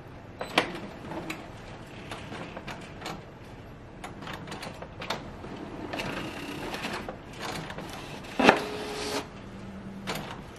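Epson EcoTank ET-8550 wide-format inkjet printer starting a print job, feeding a large sheet from the rear tray: scattered mechanical clicks and motor whirring. About eight and a half seconds in comes a loud clack, followed by a short steady tone.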